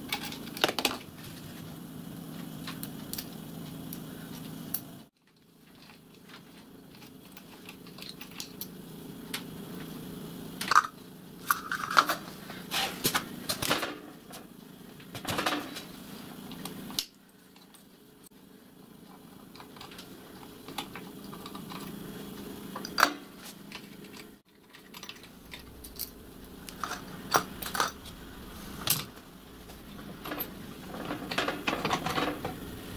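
Metal tools and small steel parts clinking and tapping irregularly as a miniature locomotive tender's steel chassis is unbolted and stripped, over a steady low hum. The sound cuts out abruptly three times, about 5, 17 and 24 seconds in.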